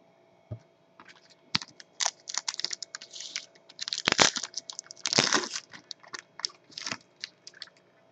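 A foil trading-card pack wrapper being torn open and crinkled by hand: a run of sharp crackles and rips, loudest about four seconds in and again around five seconds in.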